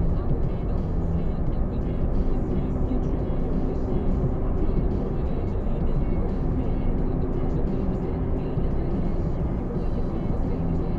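Car driving at steady speed, heard from inside the cabin: a steady low rumble of engine and tyre noise.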